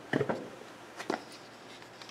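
Two short bursts of handling noise, one just after the start and one about a second in, as a container of soil mixed in water is shaken before pouring.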